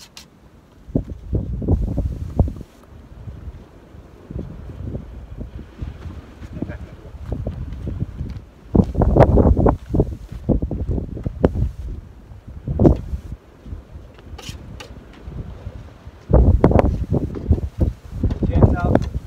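Strong gusty wind buffeting the microphone, in irregular low rumbling gusts, heaviest about halfway through and again near the end.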